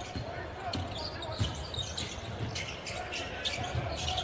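Basketball being dribbled on a hardwood court, a series of low thumps, under the steady murmur of an arena crowd.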